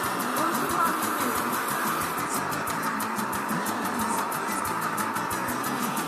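Handheld hair dryer running steadily, with background music playing under it.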